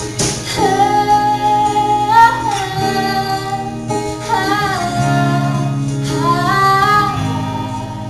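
A woman singing long held notes live over her own acoustic guitar, her voice sliding upward into new notes a few times.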